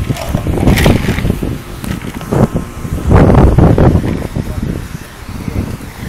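Wind buffeting a phone's microphone, a loud uneven rumble that surges a few times, with indistinct voices in the background.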